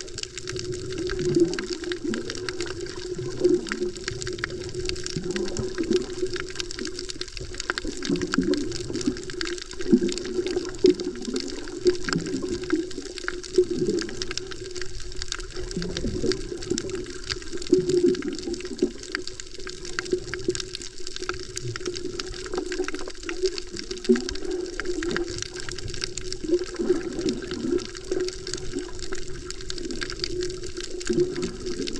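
Underwater sound from a camera held below the surface while snorkeling: muffled water movement with repeated swooshing surges every second or two and a steady scatter of faint clicks.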